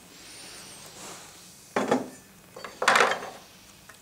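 Handling noise from metal jet-engine parts being picked up and moved: two short scraping rustles, the second, about three seconds in, louder.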